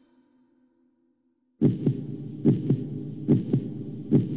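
Near silence as the previous electronic loop dies away, then about one and a half seconds in a new techno loop starts abruptly: a held low bass under a sparse electronic drum pattern of two quick thumps, the pair repeating a little faster than once a second.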